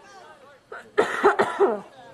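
A person coughing close to the microphone: a quick run of about three loud coughs starting about a second in.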